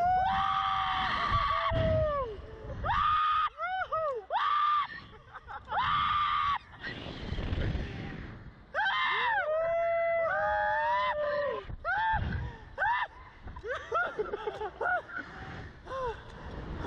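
Two men screaming and yelling on a reverse-bungee slingshot ride, long loud yells that slide up and down in pitch, some held, others short whoops, with short rushes of noise between them.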